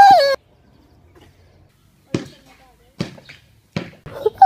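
A boy's loud, high-pitched exclamation cuts off just after the start. After a quiet stretch come three sharp knocks, about a second apart.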